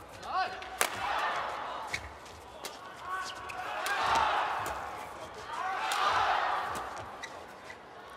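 Badminton rally: sharp racket-on-shuttlecock hits at irregular intervals, with the arena crowd's noise swelling twice, around four and six seconds in.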